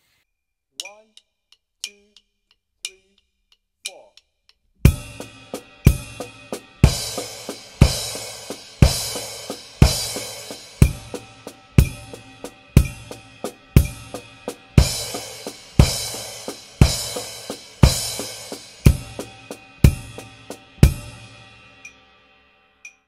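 Drum kit playing a slow accent-and-sticking exercise at 60 BPM. A cymbal and the bass drum are struck together on the accents, about once a second, with quieter snare strokes between them. It begins about five seconds in after a few faint clicks, and the cymbals ring out near the end.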